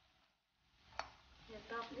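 Curry-leaf pakoras frying in hot oil in a steel kadhai: a soft sizzle fades in, and a slotted steel spoon clinks sharply against the pan about a second in while the fritters are stirred.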